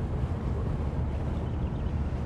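Steady low rumble of a car driving, its engine and tyre noise heard from inside the cabin.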